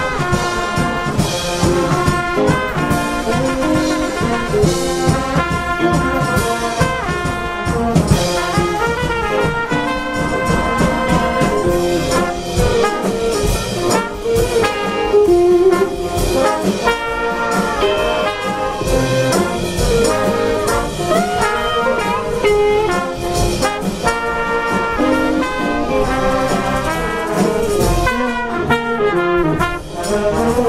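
Live high school jazz big band playing a blues number, its trumpets, trombones and saxophones carrying the tune together over a steady beat.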